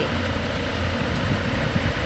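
Steady low background hum with no clear change.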